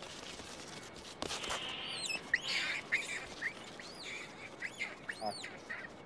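A string of short, high-pitched animal calls, each rising and falling in pitch, beginning about two seconds in and repeating until near the end.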